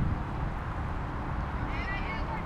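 A high-pitched voice calls out briefly near the end, over steady outdoor background noise with a low rumble.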